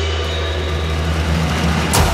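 Background music: a held low drone with steady higher tones above it, with the first sharp drum hit right at the end.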